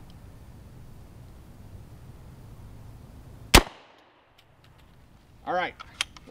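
A single gunshot from a UMP carbine with a 16-inch barrel, firing one 230 grain .45 ACP ball round at a ballistic shield, about three and a half seconds in.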